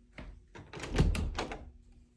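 A hinged interior closet door being opened by its knob: a light click, then a cluster of knocks and rattles as it swings open, loudest about a second in.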